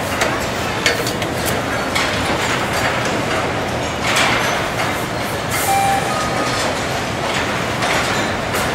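Steady clattering din of a sheet-metal press line: the conveyor running, with repeated knocks and clanks of steel body panels. A few brief high tones sound about six seconds in.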